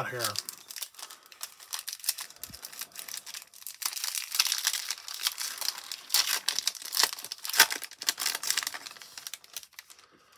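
The foil wrapper of a trading-card pack being torn open and crinkled by hand: a dense run of crackling, with louder crackles about four and seven seconds in.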